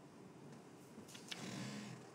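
Faint paper handling: a couple of light clicks about a second in, then a short rustle of a paper sheet being moved.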